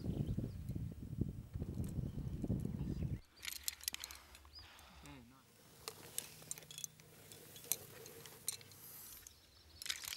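Climbing hardware, carabiners and quickdraws on a harness, clinking and jingling in scattered light clicks as the climber moves. For the first three seconds a dense low rumbling noise covers it, then cuts off suddenly.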